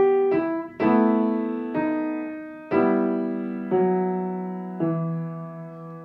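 Knight upright piano played slowly hands together: a few single notes, then a run of chords, each struck and left to ring. A top note is held while the bass line steps down three times, and the last chord fades out.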